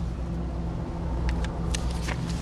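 Steady low rumble of an idling engine, with a few short sharp clicks in the second half.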